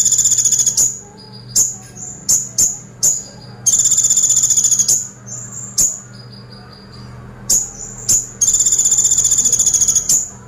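Male copper-throated sunbird (kolibri ninja) singing: three very rapid, high-pitched trills of about a second and a half each, the burst bird keepers call a 'woodpecker shot', with short sharp chips in between.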